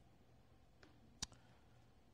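Near silence: room tone, with a faint click just before a second in and a sharper single click a moment later.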